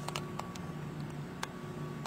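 Room tone: a steady low hum and a faint steady whine, with three or four faint clicks.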